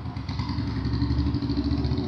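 A small engine idling steadily, a low even hum.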